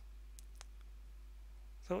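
Two faint computer mouse-button clicks in quick succession, about half a second in, over quiet room tone.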